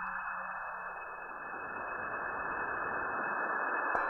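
Electronic ambient sound design: a rushing hiss swells and spreads lower over the first second and a half, then thins out near the end, ending with a short click.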